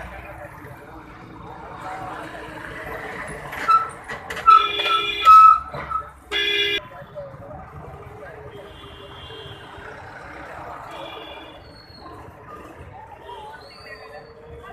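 A vehicle horn honks several short times about four and a half seconds in, then once more, loudly, a second later, over background voices and street noise. Fainter horn toots follow later.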